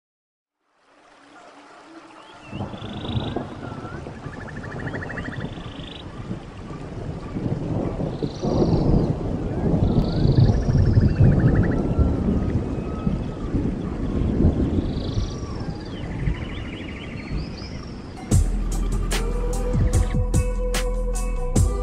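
Intro sound effects: after about a second of silence, a thunderstorm-like rumble builds up, with short chirping and trilling animal-like calls repeating over it. About two seconds before the end, music comes in suddenly with sharp strikes and a steady low tone.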